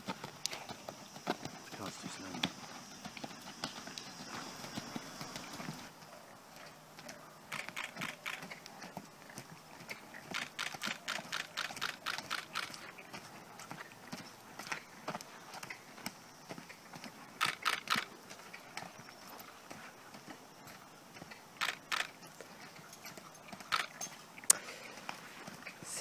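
Ridden horse's hoofbeats on a sand arena surface, faint, coming in runs of quick strikes with quieter stretches between.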